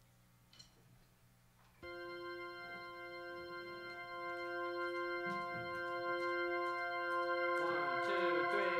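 Held organ chord on a Nord Electro 3 stage keyboard, coming in about two seconds in and slowly swelling as the song's intro; more notes join near the end.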